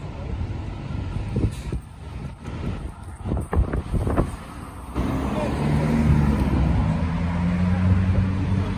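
Large road vehicle's engine running close by. It comes in suddenly about five seconds in as a steady low hum. Before that there are uneven knocks and gusts of noise on the microphone.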